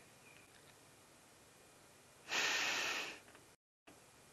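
Faint background, then about two seconds in a loud breathy exhale into the microphone, lasting about a second; the sound cuts out briefly near the end.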